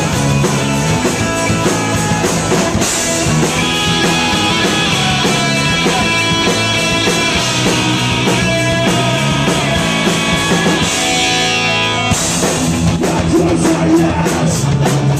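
Live rock band playing loud, with electric guitars and drums.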